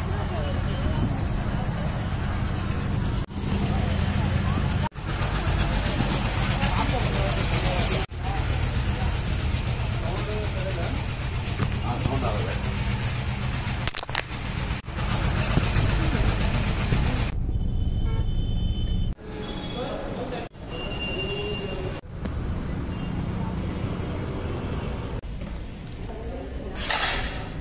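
Busy crowd and traffic noise with many voices and a few short horn toots, broken by sudden changes where short clips are cut together.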